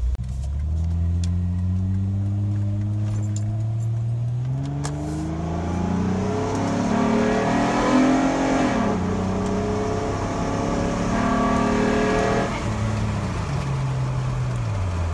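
Honda Pilot's J-series 3.5-litre V6, heard from inside the cabin, accelerating away. Its pitch climbs and falls back as the automatic transmission shifts up, about five and nine seconds in, then drops off near the end as it eases off. It pulls without hesitation or misfire on new ignition coils.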